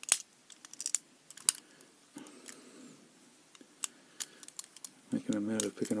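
Metal pick wire and tensioner clicking against the levers inside a lever padlock as it is being picked: a few sharp metallic clicks in the first second and a half, then faint scattered ticks.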